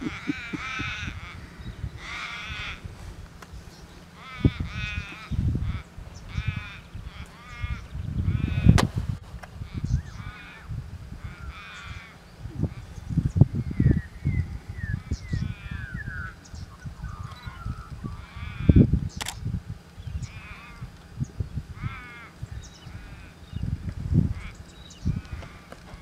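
Repeated animal calls: short, wavering, drawn-out cries over and over, with a run of quick falling chirps midway. Low gusts of wind buffet the microphone, and there are two sharp clicks.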